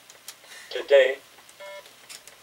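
A short vocal sound about a second in, followed by a brief electronic beep made of several steady tones.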